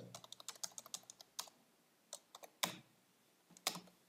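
Computer keyboard keys clicking as text is deleted and typed in a code editor: a fast run of keystrokes in the first second, then several separate, sharper key presses.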